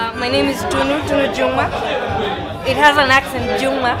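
Voices talking, with music faintly underneath.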